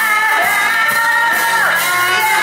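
Live rock band: a woman singing a held, bending melody over electric guitar, bass and drums, with cymbals struck on the beat.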